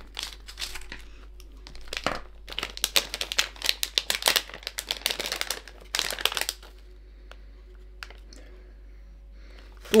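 Plastic candy bag crinkling as it is handled and opened, for about six and a half seconds, followed by a few faint small clicks.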